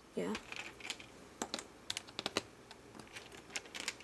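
Light plastic clicks and taps from a Lego minifigure being handled and set down on a Lego baseplate: about a dozen sharp clicks in irregular clusters, like typing.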